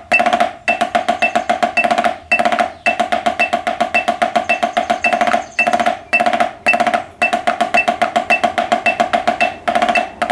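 Drumsticks playing a rudimental exercise of five-stroke rolls and sixteenth-note check patterns: a fast, even stream of strokes with a pitched ring, broken by brief gaps every second or two.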